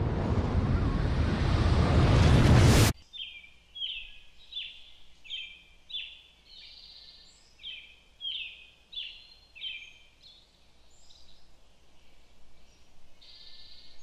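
A loud rushing noise that grows over about three seconds and cuts off suddenly, then a bird chirping over and over, short falling chirps about one or two a second.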